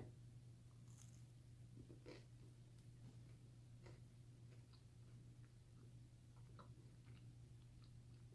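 Faint chewing of a bite of pizza, with scattered soft mouth clicks over a low steady hum.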